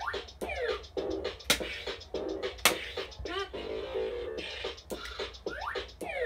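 Bop It Refresh toy's electronic game music and sound effects during rapid play: quick swooping pitch sweeps and sharp clicks over a steady beat as moves are done one after another.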